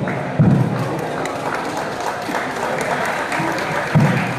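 A sepak takraw ball kicked in play: a dull thud about half a second in and another at the very end, over a steady hubbub of people talking.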